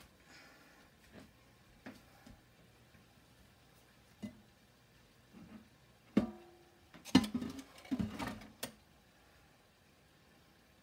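Potato wedges deep-frying in a pot of oil, with a faint sizzle and a few scattered clicks. About six seconds in come louder sharp knocks and clattering, which run until about nine seconds.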